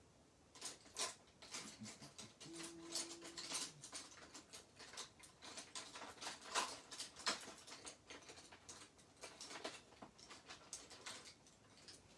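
Faint rummaging through craft supplies while searching for a paintbrush: an irregular string of light clicks, taps and rattles as tools are picked up and moved about.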